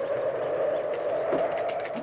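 Faint metallic clicks of a tripod-mounted machine gun's mechanism being handled, a few in the second half, under a louder sustained mid-pitched hum that swells and fades.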